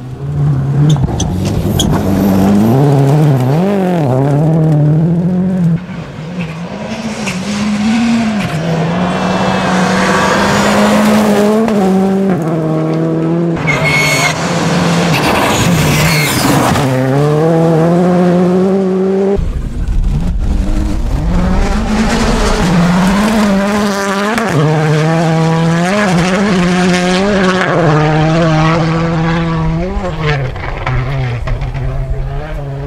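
Rally cars at full throttle on a gravel stage, engines revving hard and climbing in pitch, then dropping back at each gear change. Several passes follow one another, and the sound changes abruptly a few times from one car to the next.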